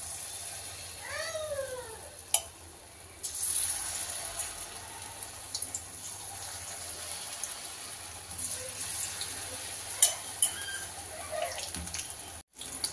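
Sweet corn pakoda batter deep-frying in hot oil in a kadhai: a steady sizzle that grows louder a few seconds in as more spoonfuls go in, with a few sharp clicks of a spoon against the pan. A brief high vocal call rises and falls about a second in.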